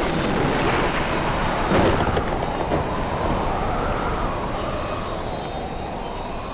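Magic-power sound effect for a glowing enchanted key: a steady rumbling whoosh, with a slow rise and fall in pitch a little past the middle.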